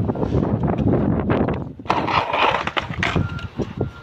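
A wooden skateboard hits the concrete and scrapes along it with a sudden clatter about two seconds in, after a stretch of rumbling wind and movement noise, during an attempt at a 50-50 grind on a curb.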